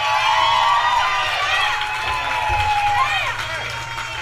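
Bar audience cheering and calling out, many voices shouting at once with long held whoops, over a steady low hum.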